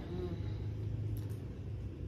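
Low steady hum of an electric fan running, with a faint click about a second in.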